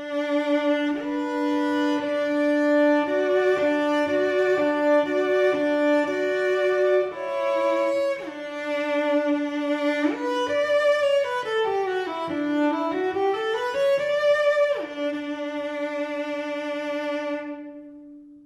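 Solo cello, bowed: double stops over a sustained D with a changing upper note that includes a low, just-tuned F-sharp major third, then about ten seconds in a scale stepping down and back up, with the F-sharp played higher in Pythagorean tuning, ending on a long held D.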